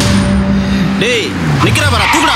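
A held background-music drone stops about a second in. A motorbike engine then passes with a falling pitch, mixed with short rising-and-falling chirps.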